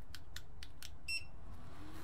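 A JBC hot air rework station being switched on: a few light clicks, then one short high beep about a second in. Near the end its blower starts, a steady low tone that comes up and holds.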